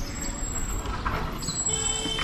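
Motorcycle engine of a TVS Apache, a single-cylinder bike, idling at a standstill with a steady low rumble.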